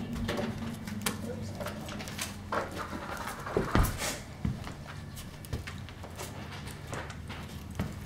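Footsteps of a Rhodesian Ridgeback walking in a carpal brace: irregular clicks and taps of claws on a hard floor, over a steady low hum, with one louder thump about halfway through.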